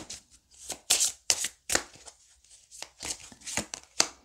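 A deck of oracle cards being shuffled and handled by hand: a run of short, quick card swishes, with a brief lull a little after halfway.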